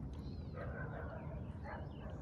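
Faint low rumble of wind and water noise as a kayak is towed along by a hooked catfish.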